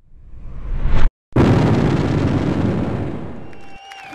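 Intro sound-effect hits: a swell builds for about a second and stops dead, then a loud boom-like impact dies away slowly over about two seconds. Electric guitar notes begin to come in near the end.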